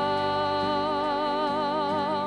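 Live worship music: a singer holds one long note with vibrato over keyboard accompaniment.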